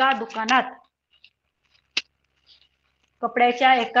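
A woman's voice speaking, then a pause of about two seconds broken by one sharp click, after which she speaks again.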